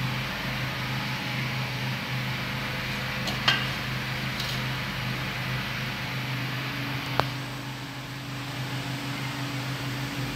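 Two sharp metallic clinks, about three and a half seconds apart, as the lid of a metal cooking pot is handled, over a steady low mechanical hum.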